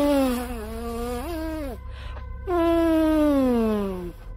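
Two long, buzzy fart sounds, each falling in pitch, the first with a brief upward wobble partway through. In the story they are the loud gas escaping from a character's belly.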